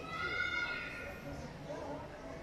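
Crowd chatter in a large hall, with a brief high-pitched squealing voice in the first second.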